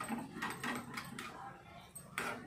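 Steel spoon scraping and clicking against a small steel tadka pan as cumin and ajwain seeds are stirred in it, a handful of irregular scrapes and taps.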